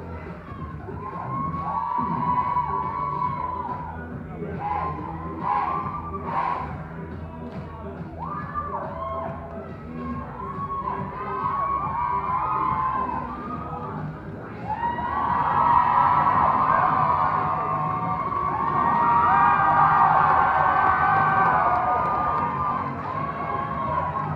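A large crowd of spectators cheering and shouting in a sports hall, with music playing underneath. The cheering swells loudest in the second half.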